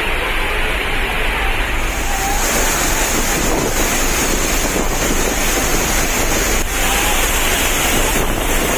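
Waterfall pouring into a rocky pool: a loud, steady rush of falling water that turns brighter and hissier about two seconds in.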